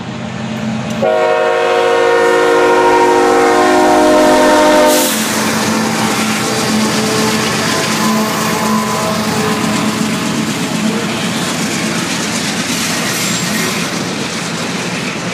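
Diesel freight locomotive's air horn sounding one long chord about a second in, held for about four seconds. Then the locomotive and its train of container cars pass close by, with a steady rumble of engine and wheels on the rails.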